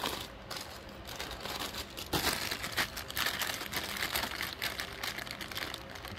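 Plastic parts bags crinkling and rustling as hands rummage in a cardboard model-kit box, with the crackle getting busier from about two seconds in.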